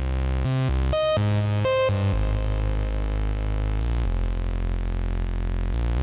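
Soloed melodic techno synth bass line from Serum, played as a sample through an Acid Box 3: long held low notes, with a few quicker notes in the first two seconds.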